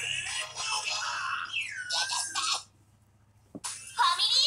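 Music from a TV broadcast heard through the television's speaker, with a tone that slides down and then back up about halfway through. It breaks off abruptly about two-thirds of the way in, followed by a single click as the sound returns.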